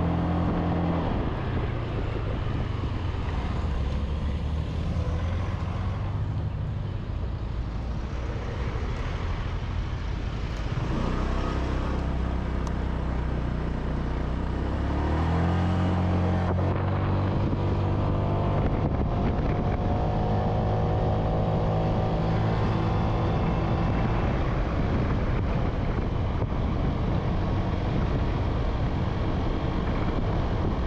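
Motorbike engine running on the move, its pitch climbing as it accelerates about ten seconds in and again about fifteen seconds in, then holding steadier and higher.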